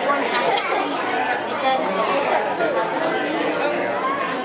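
Chatter of several people talking at once, no single voice clear.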